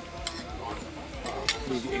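Metal forks clicking against ceramic plates while eating, two sharp clicks, with voices talking underneath.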